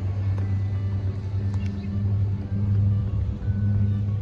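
A low, steady rumble that swells and eases in strength, with faint music underneath.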